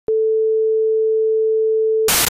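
TV test-card tone: a single steady, unwavering mid-pitched beep that switches on with a click just after the start and holds at one pitch.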